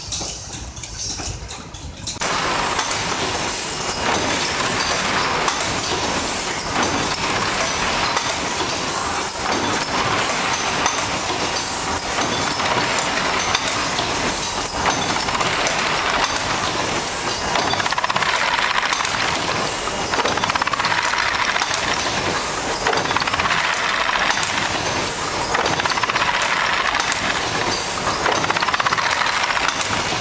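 Automatic dry-cell battery packaging machine with pneumatic cylinders running: a loud, dense mechanical din with hiss that swells every few seconds. It comes in suddenly about two seconds in, after a quieter stretch.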